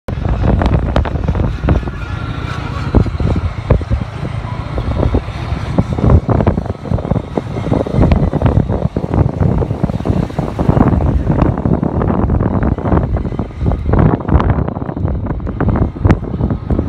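Wind buffeting the microphone on a moving motorcycle, loud and gusty, with the motorcycle's engine running underneath.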